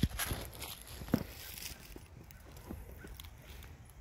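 Footsteps and rustling in dry leaves and dead plant stalks: a few sharp crunches in the first second or so, then faint scattered rustles.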